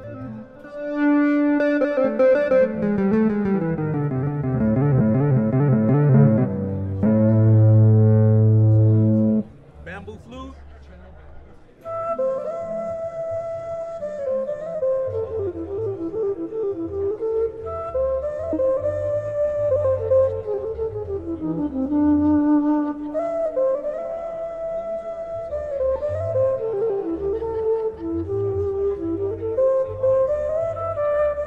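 Software synth lead patch played from a Fender Fishman TriplePlay HSS Stratocaster's MIDI pickup: a loud run of sustained notes stepping downward for the first nine seconds, a short pause, then a melodic line of single notes.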